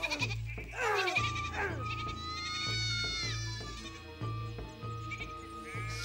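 Sheep bleating a few times over background music with a steady low drone.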